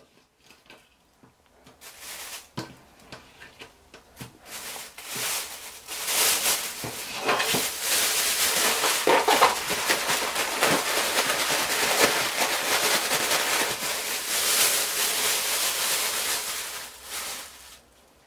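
Thin plastic bag crinkling in scattered bursts as raw shrimp are put into it. About six seconds in, a continuous loud rustle starts as the closed bag of powder is shaken and kneaded to coat the shrimp. It stops just before the end.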